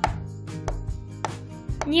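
Several light, sharp plastic taps and knocks, irregularly spaced, as a fashion doll is handled and moved about a plastic toy dollhouse, over quiet background music.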